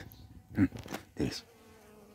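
Bees buzzing while gathering pollen from the flowers: a faint, steady hum, with two brief louder sounds about half a second and a little over a second in.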